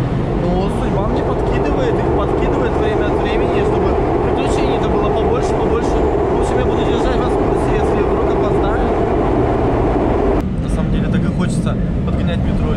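Lisbon Metro train running, heard from inside the carriage: a loud, steady rumble of wheels and motors. The loudest part of the noise cuts off suddenly near the end.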